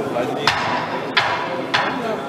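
Three sharp knocks, evenly spaced a little over half a second apart, over steady crowd chatter; at a boxing ring during the break between rounds they fit the timekeeper knocking to warn that the break is ending.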